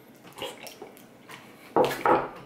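Wet mouth sounds of someone eating a spoonful of soft mashed potatoes: a few small moist clicks and smacks, then a louder, short sound near the end.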